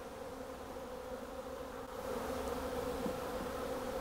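A package of honey bees buzzing as a steady low hum, with the feeder can just pulled from the box so the bees are stirring and flying out. The hum grows a little louder about halfway through.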